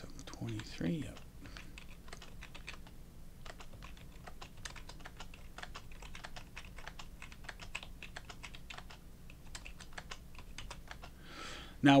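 Typing on a computer keyboard: quick runs of key clicks with short gaps, as numbers are entered into one field after another.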